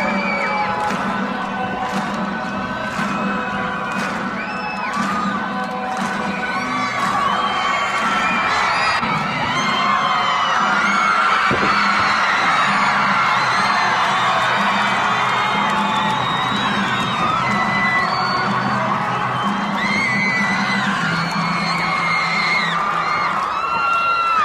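A large arena crowd cheering, with many high-pitched screams and whoops, over music with a steady beat. The cheering swells about ten seconds in.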